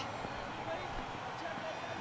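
Steady, even background noise of the cricket ground's field microphones, with no distinct event standing out.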